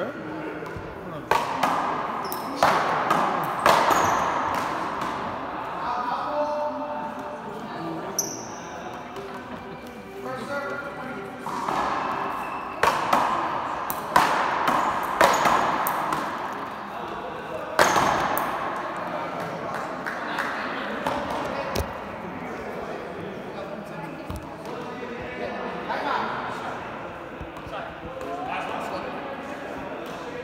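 Paddleball rally: sharp cracks of the ball struck by paddles and smacking the wall, coming in bursts of several hits with gaps between them, echoing in a large indoor court. Voices talk throughout.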